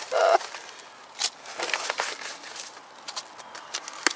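Packing tape and cardboard being handled: scattered light clicks and rustles as a strip of tape is worked into place around a cardboard wrap.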